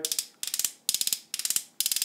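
Ratcheted plastic elbow joint of an Alien Attack APK-02 toy arm accessory clicking as it is bent, in about five quick runs of clicks roughly half a second apart.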